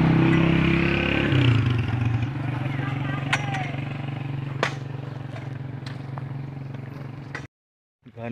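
Small motorcycle engine running while riding, its pitch dropping a step about a second in as it eases off, then holding steady, with a few sharp clicks. The sound cuts off suddenly near the end.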